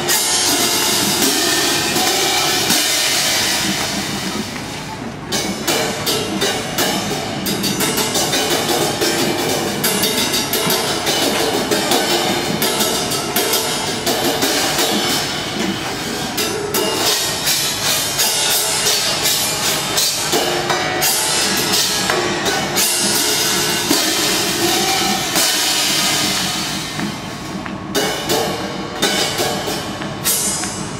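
A line of marching hand cymbals (crash cymbal pairs) playing a rhythmic ensemble piece together: many sharp crashes in quick rhythm and long bright rings, several of which cut off suddenly.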